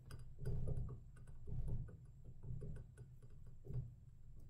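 Hands pressing and smoothing a glue-covered paper napkin onto a glass mason jar: about four soft rubbing and handling noises with small clicks.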